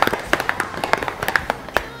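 Ice knocking and rattling inside a stainless steel cocktail shaker shaken hard, a fast run of sharp clicks, several a second, that stops just before the end.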